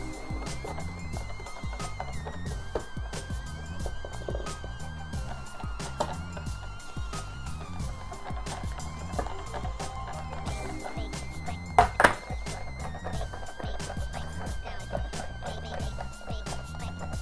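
Background music with a steady beat, over a whisk clicking and scraping in a stainless steel bowl as egg yolks are beaten for hollandaise sauce. About twelve seconds in come two loud metal clanks as the steel bowl is set onto the pot of water.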